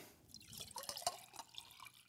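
Water poured from a bottle into a drinking glass, faintly splashing and trickling as the glass fills.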